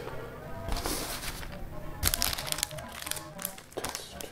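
A paper instruction leaflet rustling as it is handled and laid down, in short bursts about a second in and again from about two seconds in, over music playing in the background.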